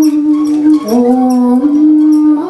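Tibetan-style song: a voice holds a long note, drops to a lower note a little under a second in and steps back up near the end, over backing music with a light tick about twice a second.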